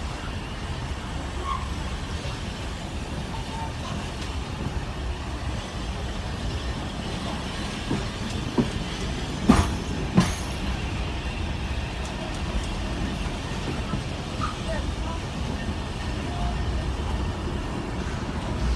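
Steady low rumble of a steam-hauled heritage passenger carriage running along the track, with two sharp knocks about halfway through.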